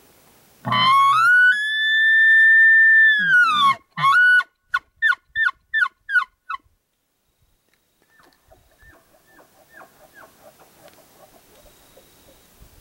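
Bull elk bugling: a low growl rising into a high whistle held for about two seconds, dropping back to a grunt, then a run of quick chuckles. A fainter series of chuckles follows a couple of seconds later.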